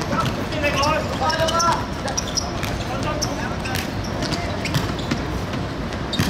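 Football being kicked and bouncing on a hard outdoor court, with scattered sharp thuds and a shout about half a second to two seconds in.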